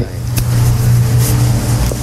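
A man's voice holding a long, drawn-out hesitation sound, a flat 'uhhh' or 'mmm' on one low, unchanging pitch.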